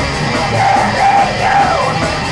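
Death metal band playing live at full volume: distorted electric guitars and drums, with yelled vocals over them.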